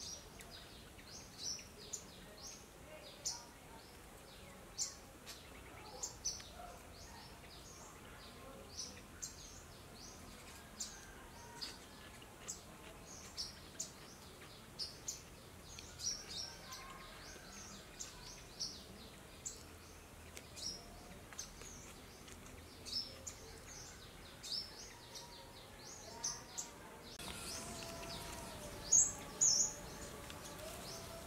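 A bird calling over and over in short high chirps, roughly one a second, above a faint steady background hiss. Near the end the background gets louder and two louder chirps follow.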